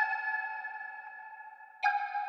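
A quiet, drumless passage of a trap instrumental. A bell-like synthesizer chord is struck at the start and fades away, and the next chord is struck just before the end.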